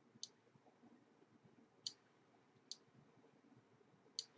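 Three faint computer mouse clicks, spaced about a second apart, in near silence.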